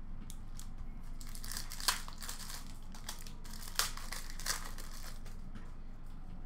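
Foil wrapper of a trading-card pack crinkling as it is torn open and handled, with a few light sharp clicks.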